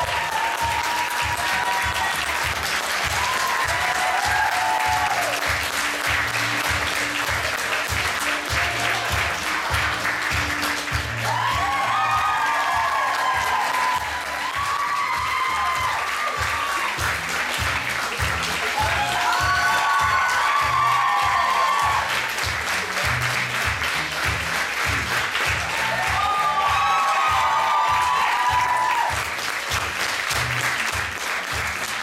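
Audience applauding steadily over music with a steady beat and short melodic phrases.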